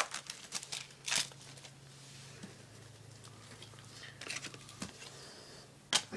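Trading-card pack wrappers crinkling and cards being shuffled by hand, in short rustling bursts: a few near the start, one about a second in and another around four seconds, over a faint steady low hum.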